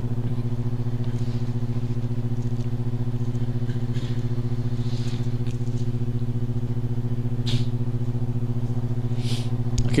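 Steady electrical hum from the church's microphone and sound system, one low buzzing tone with higher overtones and a fast flutter, typical of mains interference. A few faint rustles come through it as Bible pages are turned.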